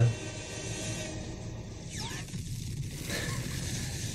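Film soundtrack: a dramatic orchestral score under sound effects, with a sweeping sound about two seconds in, as a missile strikes the alien ship's glowing beam weapon.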